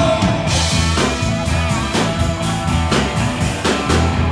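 Live rock band playing an instrumental passage: electric guitar over bass and a drum kit keeping a steady beat, with no singing.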